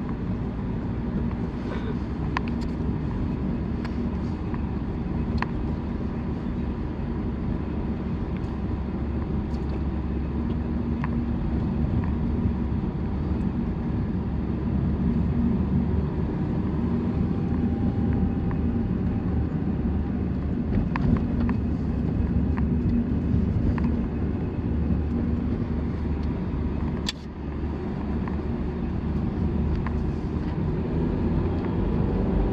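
Car driving slowly on a narrow asphalt lane, heard from inside the cabin: a steady low rumble of engine and tyres, with occasional faint ticks. Near the end the sound drops out briefly and then resumes.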